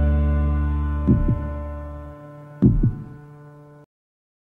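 Heartbeat sound effect: two double thuds, about a second and a half apart, over a held music chord that fades. The sound cuts off suddenly just before the end.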